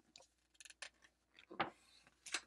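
A picture book's page being turned by hand: a few short, faint paper crackles and rustles, the loudest about a second and a half in.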